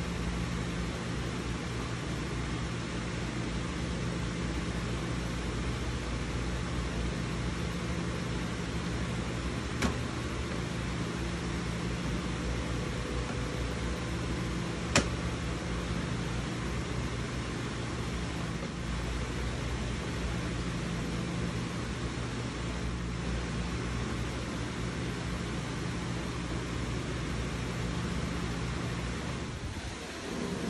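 Steady hum and hiss of a running machine, such as a room fan or air conditioner, with two brief sharp clicks about ten and fifteen seconds in.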